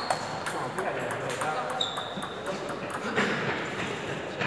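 Table tennis rally: the plastic ball ticks sharply off the bats and pings on the tabletop about every half second, then the exchange stops about two seconds in. Voices in the hall follow.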